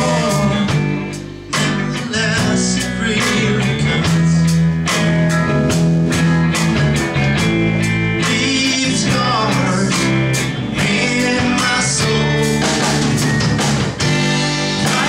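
Live rock band playing: electric guitars, bass guitar and drum kit with a steady beat, with a brief drop in level about a second and a half in.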